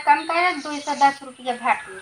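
Speech only: people talking back and forth, with a short hissing sound in one of the words.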